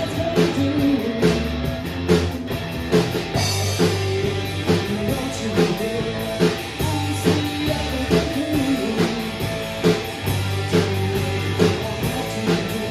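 Live rock band playing: two electric guitars and a bass guitar over a drum kit keeping a steady beat.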